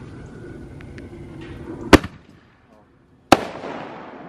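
Handheld firework tube firing into the air: two sharp bangs about a second and a half apart, the second followed by a short crackling tail.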